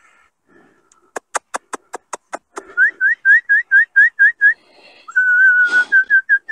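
A person whistling to call a dog: first a quick run of about seven clicks, then a string of short rising whistles about four a second, one longer steady whistle and a few more short ones.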